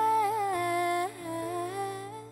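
Female voice singing without words over soft ballad backing: one held note, then a lower held note a little over a second in.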